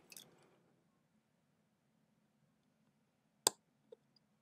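Faint steady low hum with one sharp click about three and a half seconds in and a much smaller click just before the end.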